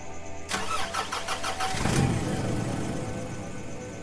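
Car engine starting: the starter cranks rapidly for about a second, then the engine catches with a loud surge and runs on, settling toward an idle.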